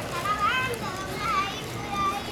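A young child's high-pitched voice: a few short rising and falling squeals or sing-song calls.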